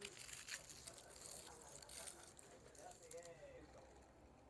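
Faint crinkling and rustling of a plastic straw wrapper being pulled off, mostly in the first two seconds, with faint voices in the background.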